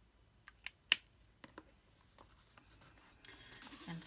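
Small hard clicks from a plastic brush pen being handled, a handful of them with one sharper click about a second in, then a soft rustle of canvas and pens near the end.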